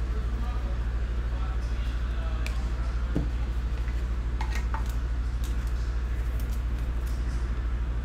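Steady low electrical hum, with a few soft clicks and taps of trading cards being handled and set down on a stack.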